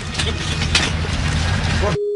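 A vehicle's engine running steadily: a constant low rumble under a broad hiss.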